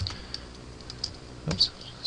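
Computer keyboard being typed on, with a handful of separate, unhurried keystrokes.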